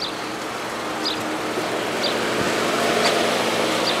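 Car running at the curb: a steady low hum under a broad rush of noise that swells slightly about three seconds in, with a few short high chirps over it.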